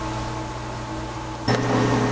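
Steady mechanical hum with a few held low tones, stepping up suddenly in level about one and a half seconds in.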